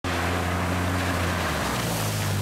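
Side-by-side UTV engine running steadily as it drives through shallow river water, with a constant hiss of splashing and spraying water over it.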